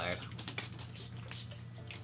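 Small pump-spray bottles of pillow mist being sprayed into the air: several short puffs of spray.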